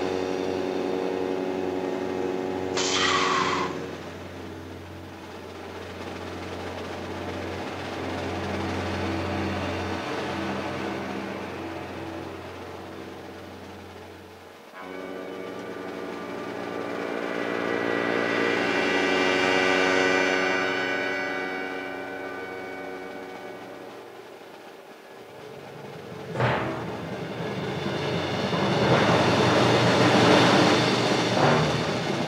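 Film soundtrack from a projected movie excerpt: sustained orchestral music that swells and fades. A short, high, falling sweep sounds about three seconds in, and a louder noisy rush comes in near the end.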